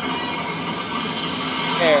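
Steady outdoor background noise with no distinct events, and a man's voice starting near the end.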